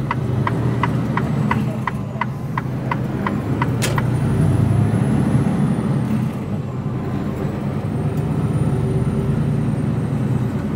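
HGV lorry cab with the diesel engine running and the indicator ticking steadily. The ticking stops after a sharp click about four seconds in, and the engine then grows louder as the truck pulls away, with a faint high whine over it.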